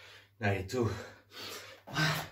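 A man panting hard in short voiced gasps, about two a second, out of breath from sustained burpees.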